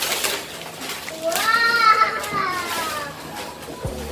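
Paper gift wrapping rustling and tearing, then, about a second and a half in, a young child's long, high-pitched squeal that rises and falls.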